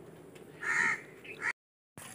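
A crow cawing: one loud harsh caw about half a second in, then a shorter call, cut off abruptly by a brief dead silence.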